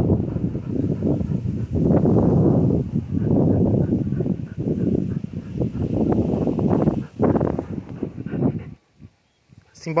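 Wind buffeting the phone's microphone in strong gusts: a loud low rumble that swells and dips unevenly, cutting out briefly near the end.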